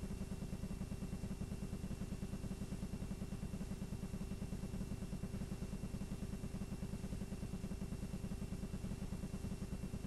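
Blank videotape playing after the recording ends: a steady low buzz with a rapid, even pulsing and faint steady hum tones over it.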